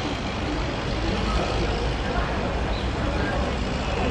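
Steady outdoor background noise with a low rumble, and faint distant voices of players on the pitch.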